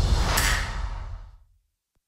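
Disney+ logo sting: a whoosh over a deep low rumble as the arc sweeps across the logo, fading out to silence about a second and a half in.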